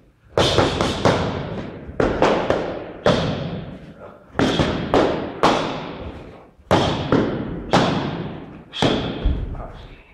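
Gloved strikes and kicks smacking into long foam Thai pads, sharp hits singly or in quick pairs about a second apart, each followed by a long echo.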